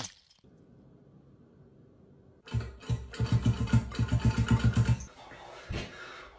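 A long, loud fart, rapidly fluttering at about seven pulses a second for about two and a half seconds, starting about halfway through.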